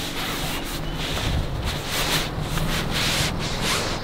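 A steady rustling, rubbing noise with irregular faint scrapes.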